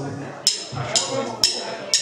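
A drummer's count-in: four sharp clicks of drumsticks struck together, about two a second.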